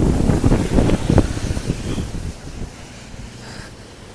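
Strong cyclone winds buffeting the microphone in irregular gusts, a low rumble that eases off over the last two seconds.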